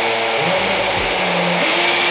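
Power drill with a masonry bit boring into a concrete block wall, running at a steady speed.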